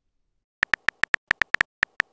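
Typing sound effect of a texting-story app's on-screen keyboard: a quick, irregular run of short clicky beeps, about seven a second, starting about half a second in.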